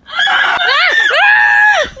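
A boy screaming, the pitch wavering at first and then held high and steady for nearly a second before it breaks off near the end.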